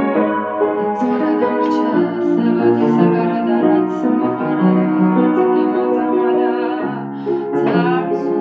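Upright piano playing an instrumental passage of chords under a melody line, with a brief lull about seven seconds in.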